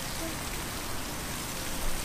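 Steady, even background hiss with no distinct event.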